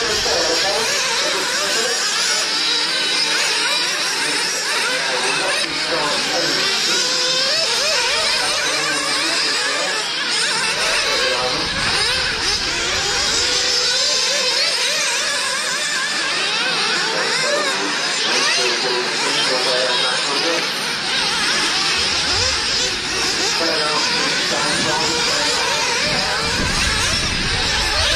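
Several nitro RC buggies' small two-stroke glow engines racing together, a high-pitched whine that keeps rising and falling as the drivers work the throttles.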